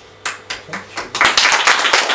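A few separate hand claps, then an audience breaking into full applause a little over a second in.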